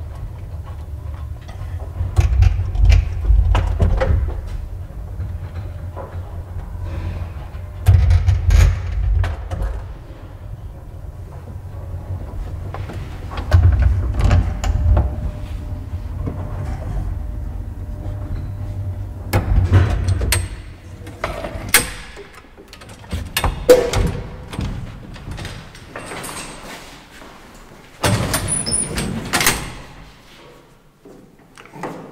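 Vintage traction elevator car travelling in its shaft: a low rumble that swells louder about every six seconds, with clicks and rattles. About two-thirds of the way through the rumble stops as the car halts, followed by a few clunks and a metal clatter near the end as the collapsible car gate is opened.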